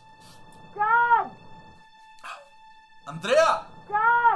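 A person crying in high, wailing sobs, each one rising and then falling in pitch, coming about once a second. A steady held musical tone runs underneath.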